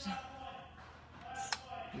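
Indistinct voices, with a single sharp click about one and a half seconds in.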